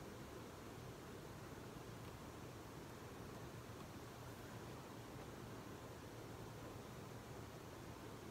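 Faint, steady hiss of room tone with no distinct sounds.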